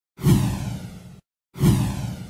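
Two swoosh sound effects for an animated logo intro, about a second and a half apart, each starting suddenly with a low hit, then falling in pitch and fading, with dead silence between them.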